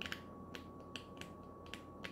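Fingers leafing through the pages of a small paper tarot guidebook: a handful of faint, sharp little clicks spread unevenly through the moment.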